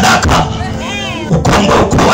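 A man preaching loudly into a microphone through an outdoor PA loudspeaker system; his amplified voice comes out harsh and distorted.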